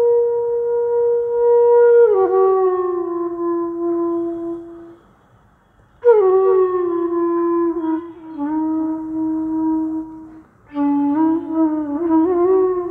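Solo flute playing raga Jhinjhoti in slow phrases. A long held note slides down to a lower note and fades. After a pause of about a second, a second phrase glides down to a held low note, and near the end a quicker, ornamented phrase begins.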